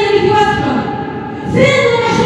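Many voices singing together in chorus, holding long notes that slide from one pitch to the next, with a new, louder phrase starting near the end.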